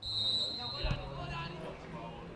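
Live football pitch sound: a referee's whistle blown steadily for about a second at the start, a single dull thud of a ball being kicked just under a second in, and faint players' shouts around it.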